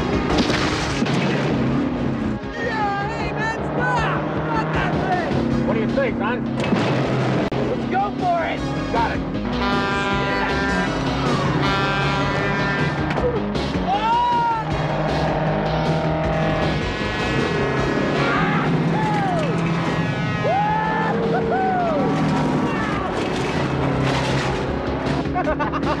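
Action-film soundtrack: a dramatic music score of held chords and swooping, arching notes, mixed over the running engine of a heavy diesel semi-truck.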